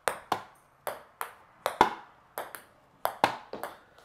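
A ping pong ball in a rally, clicking off a hardwood floor and off the players' paddles: about a dozen sharp clicks in uneven pairs, each bounce followed quickly by a hit.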